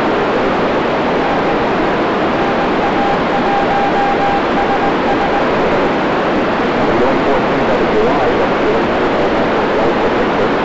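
Amateur radio transceiver's speaker giving steady FM static hiss with the squelch open: no signal is coming through from the space station's crossband repeater downlink. A faint steady whistle sits under the hiss for a few seconds in the first half.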